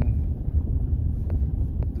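Steady low rumble filling the pause between words, with a couple of faint ticks.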